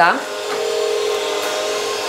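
Powerful 1600-watt stand mixer running steadily with its dough hook, kneading butter, flour and eggs into a yeast dough; an even motor hum.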